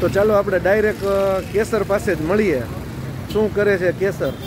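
A man speaking, with road traffic running in the background.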